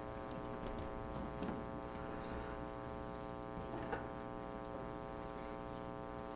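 Steady electrical hum and buzz in the recording, with faint knocks and shuffling of musicians moving back to their chairs on stage, two small knocks standing out about a second and a half and about four seconds in.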